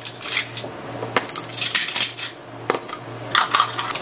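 Ice cubes dropped one after another into a ceramic mug, several separate hard clinks and clatters against the mug and each other.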